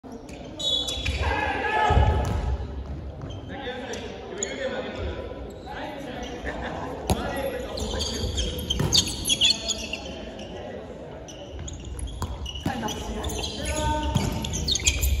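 Players shouting and calling out during a dodgeball game, with a rubber ball smacking and bouncing on the wooden gym floor a few times, all echoing around a large hall.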